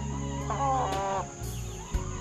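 A single short rooster call, lasting under a second, starting about half a second in, over background music.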